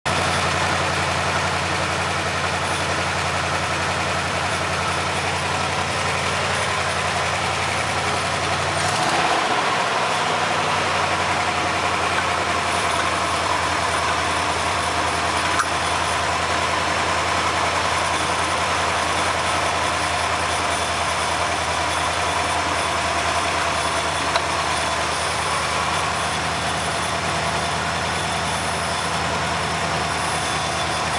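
Ford 292 Y-block V8 idling steadily, with one brief rise in engine pitch about nine seconds in.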